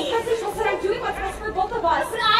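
Indistinct chatter: several voices talking over one another, no single clear line of speech.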